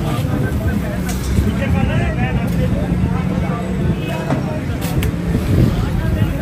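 Busy street ambience: a steady low traffic rumble under the chatter of a crowd of voices, with a few sharp clicks.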